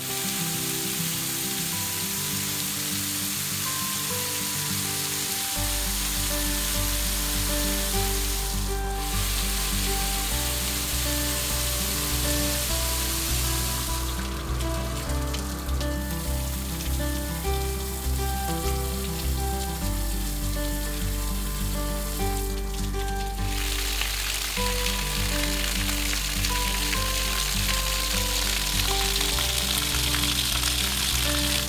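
Outdoor rain-style shower heads running, water pouring steadily onto a stone floor as a continuous hiss, with background music and a soft bass line over it.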